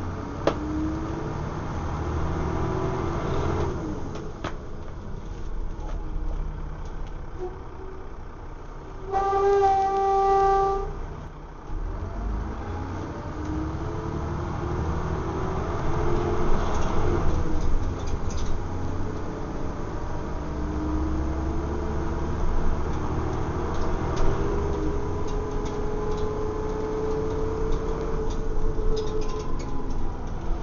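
Dennis Trident double-decker bus heard from inside its passenger deck while driving: the diesel engine and drivetrain run with a low rumble and a pitch that rises and falls as the bus pulls away and changes gear, along with interior rattles. About nine seconds in, a vehicle horn sounds one steady note for about a second and a half.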